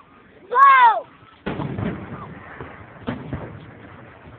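Aerial firework shells bursting: a sudden boom about a second and a half in that rolls on and dies away, then a second sharp crack about three seconds in. Just before the first boom, a short loud whoop rises and falls in pitch.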